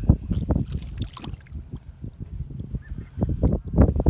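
Irregular clanks and knocks of a heavy rusted chain being handled against a wooden dock, growing denser near the end.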